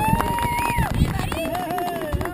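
Several people's voices talking and calling out over one another, with scattered knocks and thumps underneath.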